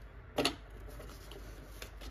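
Paper money being handled: one sharp tap about half a second in as bills are set into a clear acrylic cash holder, then a couple of faint ticks, over a low steady room hum.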